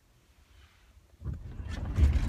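Near silence, then a little over a second in, the low rumble of a car on the move, heard from inside the cabin, comes in and grows louder.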